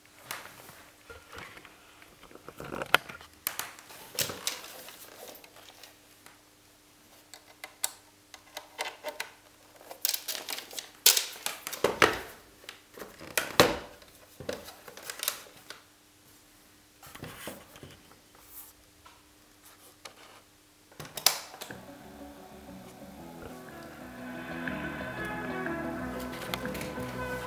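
Clicks and knocks of a 3.5 mm jack being plugged into a Sony TC-61 cassette recorder's monitor output and its keys being handled, over a faint steady hum. About 21 seconds in, a key clicks and music on the tape starts playing back quietly through the connected external speaker.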